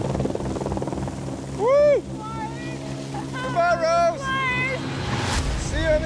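Helicopter running steadily overhead while lifting a heavy slung load, a continuous low drone. Over it come short swooping pitched sounds rising and falling, the loudest near two seconds in and a cluster of them in the second half.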